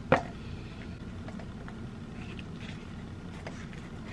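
A person taking a bite of tuna on a cracker: one sharp crunch right at the start, then a few faint chewing sounds over a steady low hum.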